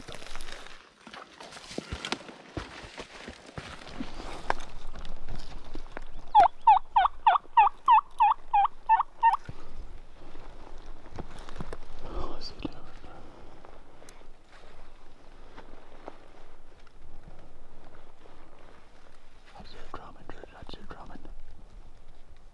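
A run of about a dozen loud turkey yelps, some four a second, lasting about three seconds in the middle, with rustling of leaves and gear before and after.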